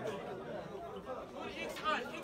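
Crowd of men talking over one another in a packed shop, a steady jumble of voices, with one voice calling out louder near the end.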